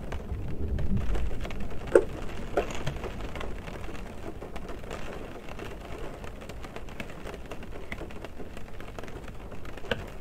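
Rain drops hitting the roof and windows of a car, heard from inside the cabin: many small irregular hits with a few louder single drops, the loudest about two seconds in. A low rumble in the first second or so fades away.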